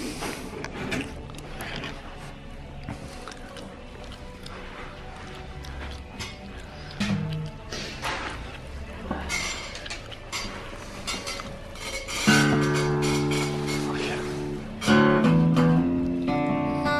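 A Martin 000 Road Series all-mahogany acoustic guitar strummed: about twelve seconds in, a full chord rings out and slowly decays, and a second strum follows about three seconds later. Quieter background sound fills the stretch before it.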